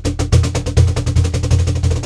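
Cajon struck rapidly by both hands in double strokes, two quick hits per hand. The result is a fast, even roll of about ten strokes a second with a deep bass body.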